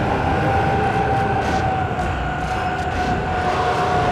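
Film soundtrack sound design: one long high tone, sinking slightly in pitch, held over a heavy low rumble.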